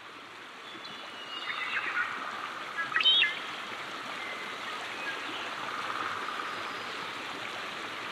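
Small creek running steadily, fading in over the first couple of seconds, with a few brief high chirps about two and three seconds in.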